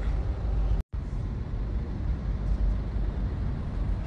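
Car cabin noise from inside a car: a steady low rumble of engine and road. About a second in, it cuts out completely for a split second.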